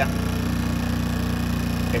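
A-iPower 2000-watt portable generator with a Yamaha-built engine running steadily at low speed: an even, low hum. It is super quiet, measured at about 58 decibels.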